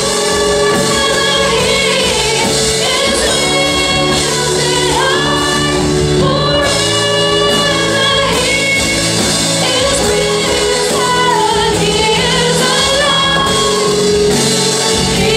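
Live worship band playing a praise song, with a woman singing the lead melody into a microphone over guitar, keyboard and bass.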